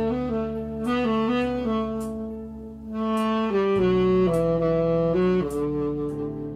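Tenor saxophone playing a slow ballad melody in held, legato notes. Its natural tone is unprocessed, recorded without effects or a separate microphone, over a soft accompaniment of sustained low notes.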